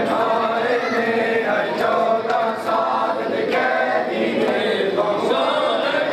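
Men's voices chanting a noha mourning lament together, with sharp slaps of hands striking chests at uneven intervals as part of the matam.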